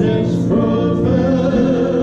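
Voices singing a slow gospel chorus with held notes over a keyboard accompaniment.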